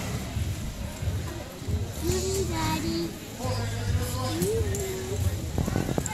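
Two drawn-out shouted calls, one about two seconds in and one about four and a half seconds in, over a steady low din in the indoor arena.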